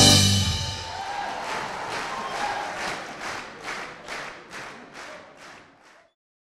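A jazz band's final chord, with a drum-kit cymbal crash, dies away in the first second. The audience then claps in time, about two to three claps a second, growing fainter toward the end.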